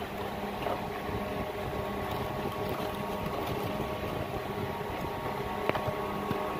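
A steady machine hum in the background, with light handling noises as fridge wiring is tied up by hand, and a sharp click near the end.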